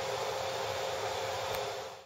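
Steady hiss with a faint even hum, like a fan or running equipment, and one faint click about one and a half seconds in; the sound cuts off abruptly at the end.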